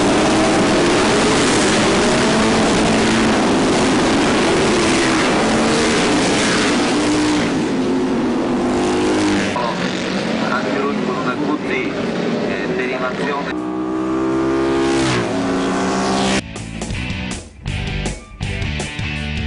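A pack of Moto Guzzi racing motorcycles pulling away from the start, many engines revving together in a loud mass of engine sound. Later one engine stands out, rising in pitch as it revs up, before the sound thins out near the end.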